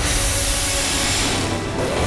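Fighter jet engine on afterburner: a loud rushing hiss that starts suddenly and dips briefly near the end, over background music with held tones.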